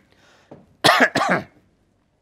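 A man clearing his throat: two short, harsh bursts about a second in, after a faint breath.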